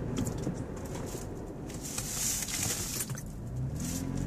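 Cabin noise of a 2015 Toyota 4Runner on the move: a steady low rumble of its V6 and the road, with a short rise of hiss about two seconds in.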